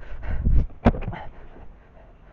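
A sharp click about a second in as the Land Rover's spare-wheel rear door is unlatched and swung open, after a low rumbling at the start.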